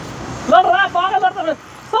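A man's voice speaking a short run of words about half a second in, over faint outdoor background noise.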